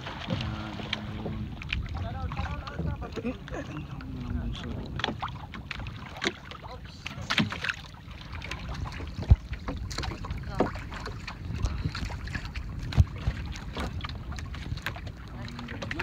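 Water sloshing and splashing against the hulls of moored outrigger boats, with wind on the microphone and scattered small clicks and splashes. Two sharp knocks come in the second half, and faint voices of people working nearby come and go.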